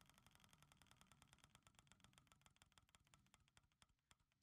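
Faint, regular ticking of an online mystery-box spinning reel, quick at first and gradually slowing as the reel winds down.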